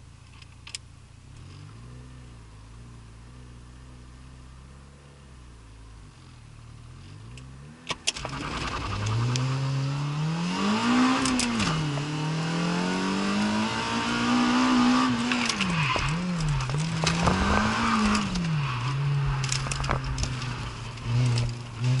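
Citroën Saxo VTS engine heard from inside the cabin, idling steadily for about eight seconds, then after a sharp click the car pulls away and the engine gets much louder, its revs rising and falling repeatedly as the driver accelerates and lifts through the course.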